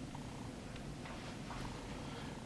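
Quiet room tone: a low steady hum with a couple of faint ticks.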